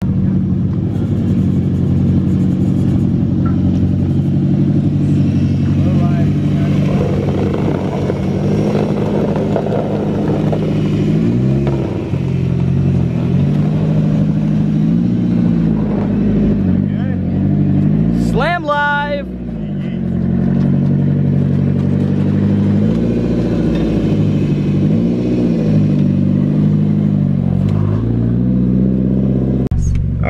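A car engine running steadily at idle, with several short revs. About two-thirds of the way through, a high whistle sweeps sharply upward.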